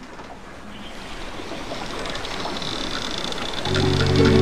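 A rushing noise swelling steadily louder, then music with sustained low notes comes in just before the end.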